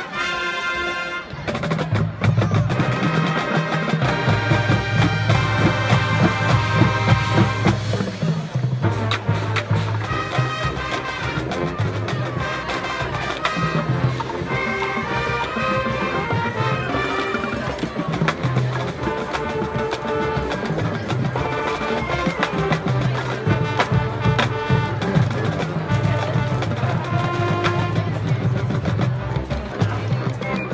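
Marching band playing: brass over a drumline, the low brass holding long notes under the melody, with constant drum and percussion hits.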